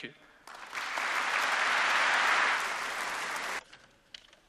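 Audience applause that begins about half a second in, builds to a steady clapping, and cuts off abruptly near the end.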